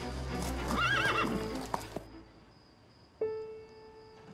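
A horse whinnies once about a second in, a short wavering call, over background music. Two sharp knocks follow, and near the end a single held musical note sounds.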